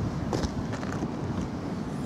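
Volkswagen Scirocco's rear tailgate being unlatched and lifted open: a short click about half a second in, over steady outdoor wind and rumble.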